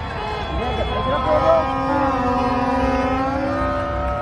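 A crowd cheering and yelling, several voices holding long drawn-out shouts at once, loudest about a second and a half in, over a steady low rumble.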